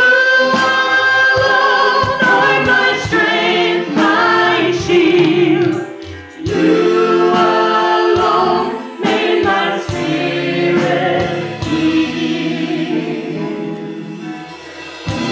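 Female worship singers singing a gospel worship song together, long held notes with vibrato, over a steady beat of hand percussion.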